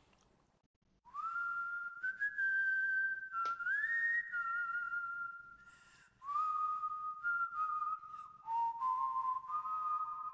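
A whistled melody of long held notes joined by short slides, opening a song's music video. A single sharp click sounds in the middle.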